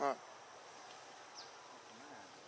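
Steady faint buzzing of insects in forest, with one short voiced call right at the start.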